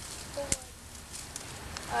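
Faint rustling of dry sticks and leaf litter being handled, with one sharp snap about half a second in. A child's voice starts right at the end.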